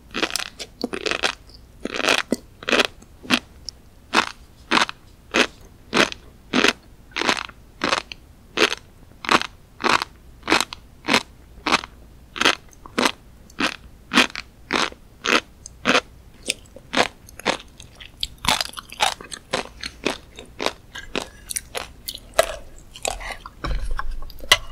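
A mouthful of flying fish roe (tobiko) being chewed, the small eggs crunching and popping between the teeth in a steady rhythm of about two crunches a second. In the last few seconds the crunching turns quicker and less even.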